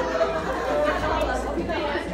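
Indistinct talking and chatter of voices, with no clear words, in a large shop.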